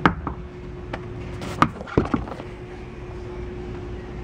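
A few sharp knocks and clicks from a removable boat seat cushion and its under-seat storage compartment being handled, the loudest about a second and a half in, over a steady low hum.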